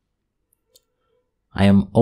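Near silence with one faint, brief tick about three quarters of a second in, then a voice starts speaking near the end.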